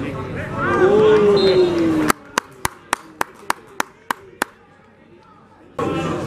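Men's voices calling out around a football pitch, including one long, drawn-out shout that falls in pitch. About two seconds in the sound drops away abruptly, and a run of about nine sharp clicks follows, roughly three a second. The voices come back near the end.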